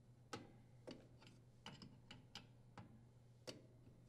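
Faint, irregular clicks and taps of a braided water supply line's metal nut being handled and threaded onto the dishwasher's brass inlet valve fitting, about nine in four seconds.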